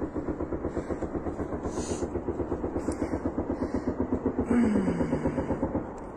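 Sustained automatic gunfire at attack drones, rapid evenly spaced shots at about eight a second without a break. About four and a half seconds in, a tone slides down in pitch under the firing.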